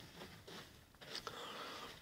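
Almost quiet room tone with a few faint, short clicks and a soft low rustle.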